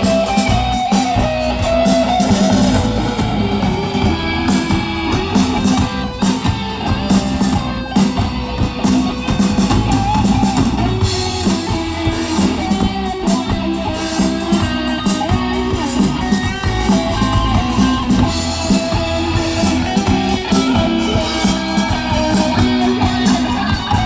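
Live rock band playing through a stage PA: distorted electric guitars, bass guitar and drum kit, steady and loud.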